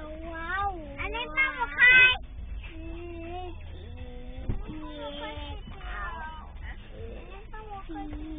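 A young girl's voice in a string of held, wavering sung notes with pitch glides, the loudest and highest just before two seconds in, over the steady low rumble of a car cabin.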